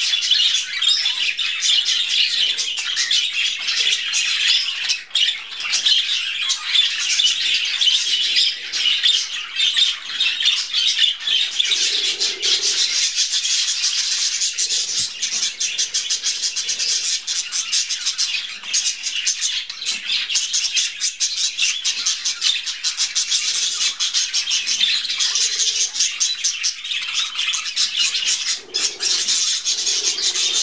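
A flock of budgerigars chattering without pause: a dense, high-pitched mix of chirps, warbles and squawks.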